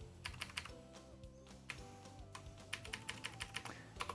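Computer keyboard being typed on: a run of quick, irregular key clicks as a terminal command is entered.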